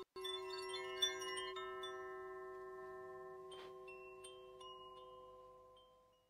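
Intro jingle: a single sustained bell-like tone with a shimmer of small high chimes over the first second and a half, fading away slowly toward the end.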